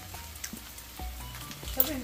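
Faint, steady sizzle of ground beef frying in a pan on the stove, with a low hum underneath.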